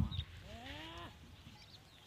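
A goat calling once: a single drawn-out call, rising in pitch, lasting under a second. A short low thump comes just before it at the very start.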